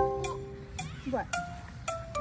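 Background music: a light tune of short, struck bell-like notes, each ringing on briefly before the next.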